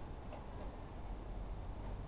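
Faint light clicks of plastic on plastic as a toddler works at a toy ride-on car, over a low steady background rumble.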